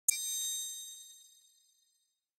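A single bright, bell-like chime struck once, ringing with high tones that fade away over about a second and a half.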